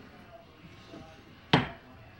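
A single sharp knock about one and a half seconds in, a dinner plate set against the tabletop, amid quiet room tone.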